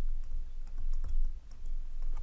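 Light taps and scratches of a stylus writing a word on a tablet, over a low rumble.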